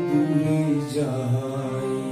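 Harmonium playing steady held notes and chords, the accompaniment to a Bengali song near its close, with a change of notes about a second in.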